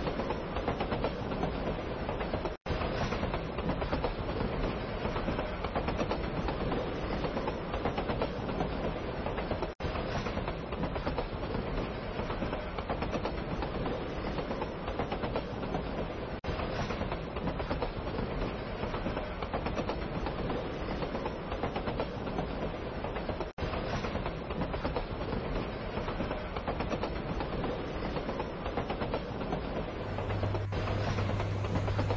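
A train running steadily along the rails, with the continuous rumble and rattle of its wheels and carriages. The sound cuts out for an instant about every seven seconds, as a repeated recording would.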